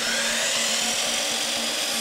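DeWalt miter saw running and cutting through wood: a steady, loud, high whine over the motor's hum.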